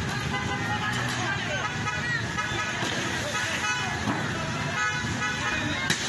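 Street commotion: voices of a crowd shouting over traffic noise, with car horns sounding several times in held blasts. A single sharp bang comes just before the end.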